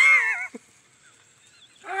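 An animal's single short, high cry that falls in pitch, in the first half-second.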